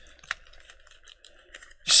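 Light, irregular clicking and tapping of small objects being handled at a desk, with one sharper click about a third of a second in.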